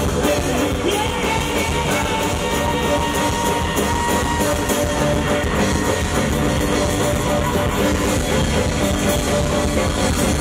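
Live rock and roll band playing loudly, with electric guitars, drum kit and keyboard, and singing over it.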